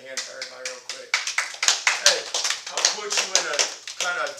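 Hand clapping with men's voices talking over it, the clapping starting about a second in.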